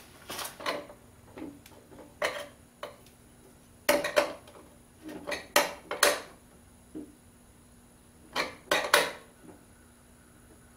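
Screwdriver clicking and scraping against the sheet-metal junction box of a Phase-A-Matic static phase converter as the terminal screws are tightened down. The short metallic clinks come irregularly, with the loudest clusters about four, six and nine seconds in.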